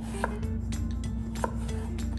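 Kitchen knife slicing through a peeled raw potato and knocking on a wooden cutting board, with two sharper knocks about a second apart. A steady low hum runs underneath.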